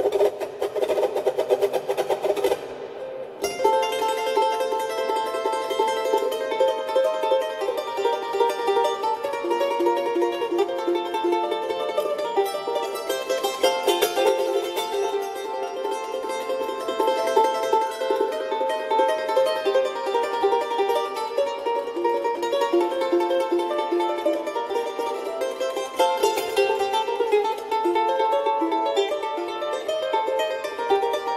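Solo charango playing a carnavalito: quick strummed chords, a short break about three seconds in, then a plucked melody over chords.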